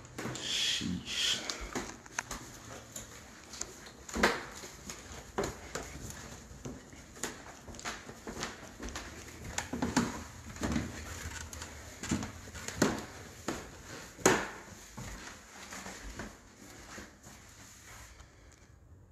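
Footsteps on a hardwood floor and wooden stairs: irregular knocks and thuds about one to two seconds apart.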